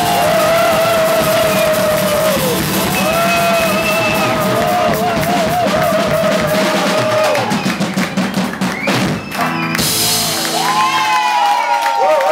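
Live rock jam with drum kit, acoustic guitar and a lead line that slides and wavers in pitch. About ten seconds in, the band stops on a cymbal crash. A lone sliding line carries on after the drums and bass fall away.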